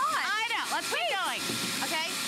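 A voice calling out with a sweeping pitch over the steady whine of a Bissell Garage Pro wall-mounted wet/dry vacuum's 12-amp motor running in suction mode.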